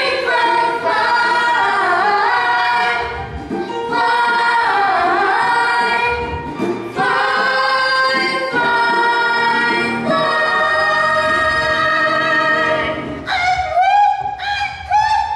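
Ensemble cast of a stage musical singing together in chorus, with a few swooping phrases and then long held notes in the second half.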